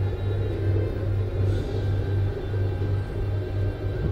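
Soundtrack of an aviation film playing on a display screen: a deep, steady rumble that pulses gently, with background music under it.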